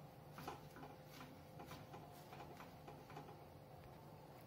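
Faint, irregular clicks and scrapes of a steel spoon against a clay handi as chopped spinach and soaked moong dal are stirred, over a faint steady hum.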